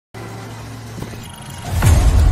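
Film-trailer sound design: a steady low electrical hum, then near the end a falling whoosh that drops into a loud, deep rumble.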